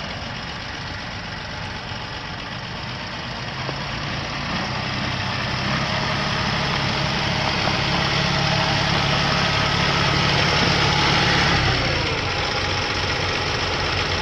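A 2018 Massey Ferguson 1736 compact tractor's diesel engine runs steadily as the tractor drives closer, growing louder. About twelve seconds in, the engine note drops as the tractor slows and stops.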